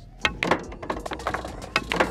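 A pool shot played over background music with a steady beat: the cue tip strikes the cue ball, which clacks into the object balls, and the balls drop into the pockets, heard as sharp clicks and knocks.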